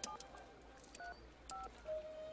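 Touch-tone payphone being dialed: three short, faint two-tone keypad beeps, one near the start, one about a second in and one about a second and a half in, with light clicks between them.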